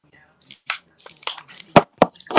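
Handling noise on a call microphone as a headset is fiddled with: irregular scratching and crackling, with one sharp knock near the end as the loudest sound.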